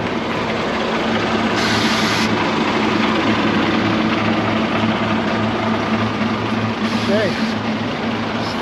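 Coach bus's diesel engine idling close by as a steady low hum, with a short hiss of air about two seconds in and a fainter one near the end.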